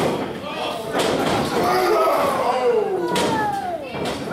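Thuds from the wrestling ring, one about a second in and another near the end. Audience voices call out in the hall, including a long drawn-out shout that falls in pitch.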